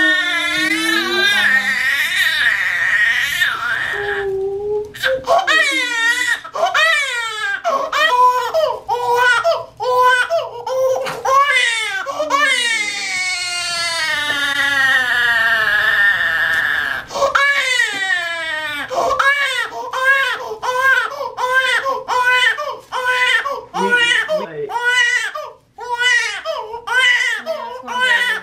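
Infant crying hard after her first vaccination shots: long, high wails, turning near the end into short cries about two a second.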